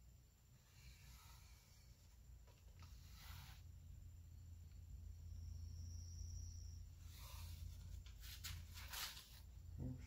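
Faint scratching of a pen drawn across a wooden stretcher board, a few short strokes about three seconds in and again near the end, over a low steady hum.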